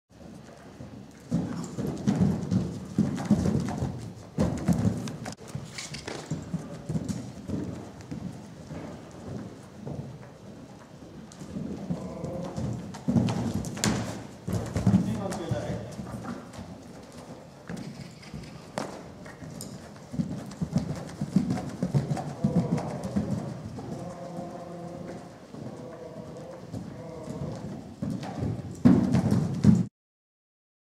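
Hoofbeats of a loose horse on the sand footing of an indoor arena, coming as dull thuds in groups as it passes. The loudest thuds come near the end as it takes off over a jump.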